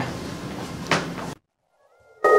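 Room noise with a single short knock about a second in. Then the sound cuts off abruptly to silence, as at an edit, and the first faint notes of music creep in right at the end.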